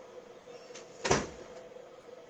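A single short thump about a second in, over a faint steady hum.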